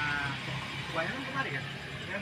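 Quiet background voices of people talking, with a short wavering, high voiced sound at the very start.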